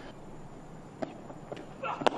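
Quiet open-air cricket ground ambience: a low, even hiss with two light clicks, then a commentator's voice starting just before the end.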